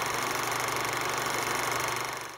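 A steady, rapid mechanical clatter: a sound effect laid over the animated closing title.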